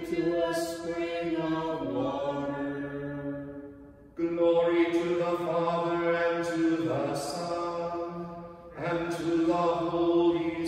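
Liturgical chant of Vespers: sung phrases on long held notes, with a break for breath about four seconds in and another dip near nine seconds.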